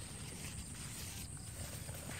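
Quiet outdoor garden ambience: a steady, thin, high-pitched insect drone over a low rumble, with no distinct event.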